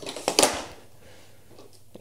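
A few short clicks and knocks in the first half second from the King Song S20 Eagle electric unicycle's trolley handle being handled, then quiet room tone.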